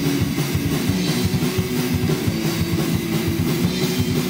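Live punk rock band playing an instrumental passage: electric guitar over a drum kit with a fast, steady beat and constant cymbals.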